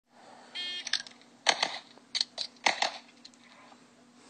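A shot-timer beep, then a Beretta 92X open-division race pistol firing a pair of quick shots, a pause of about a second for a reload, and a second pair: a two-reload-two drill.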